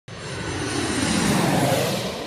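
Whoosh sound effect for an animated logo intro or outro. It is a rushing noise that starts suddenly after a moment of silence, swells over about a second and a half, then begins to fade.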